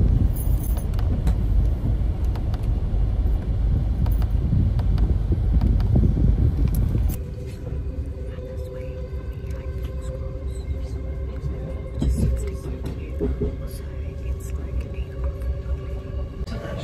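Loud low rumble inside a car cabin, which cuts off abruptly about seven seconds in. A quieter, steady hum inside a train carriage follows, with two steady humming tones.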